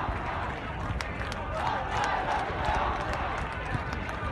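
A large crowd of protesters chanting and shouting slogans, many voices blended into one loud, swelling roar.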